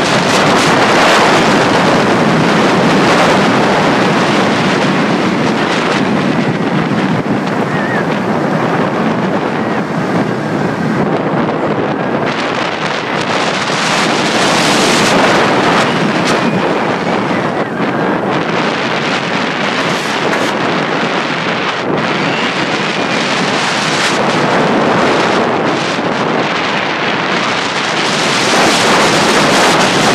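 Loud wind rushing over the microphone of a camera riding a steel roller coaster, swelling and easing in waves as the train's speed changes.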